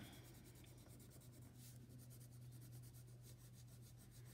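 Near silence, with faint quick strokes of colouring on paper and a low steady hum underneath.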